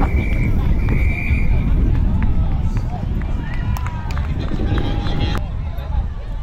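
Outdoor football-ground audio dominated by wind rumbling on the microphone, with a whistle blown in two long steady blasts in the first two seconds, followed by players' shouts and calls.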